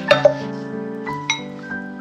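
Background music of steady, soft keyboard-like tones, with a few short, sharp clinks: two right at the start and one a little past the middle.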